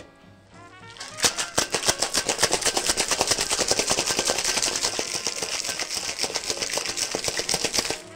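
A cracked ice cube rattling inside metal cocktail shaker tins as a drink is shaken hard. The fast, steady rattle starts about a second in.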